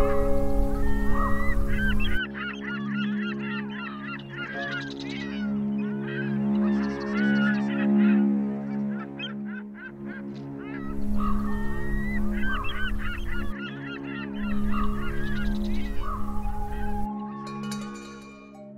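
Many short, wavering bird calls over ambient music with a held low tone, with stretches of low rumble near the start and again about eleven and fifteen seconds in.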